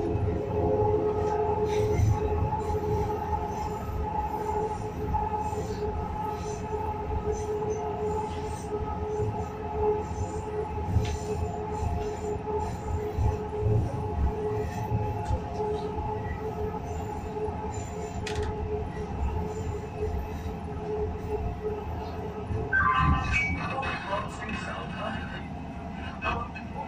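Hyderabad Metro train running on the elevated line, heard from inside the car: a steady whine in two tones over the rumble of the wheels on the rails, with scattered light clicks. Near the end a brief higher-pitched sound rises above it.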